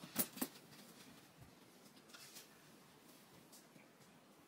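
A shoulder bag with a metal chain strap tossed onto a bed, its hardware clicking twice as it lands, followed by a few faint footsteps.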